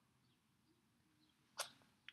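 Near silence, broken about one and a half seconds in by a single short, sharp puff of noise that fades quickly.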